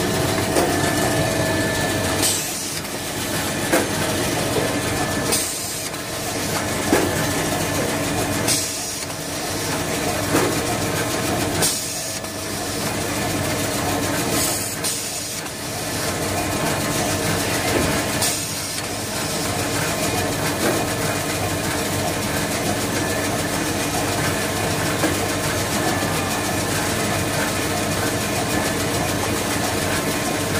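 Automatic toilet-paper production machinery running steadily, a dense mechanical hum with several steady whining tones. In the first part a short hiss comes about every three seconds, each followed by a brief dip, and the sound is more even after that.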